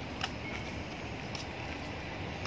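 Steady outdoor city background noise with a low rumble, and a few faint taps about a second apart.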